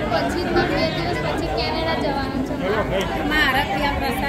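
Voices of several people talking at once, overlapping chatter.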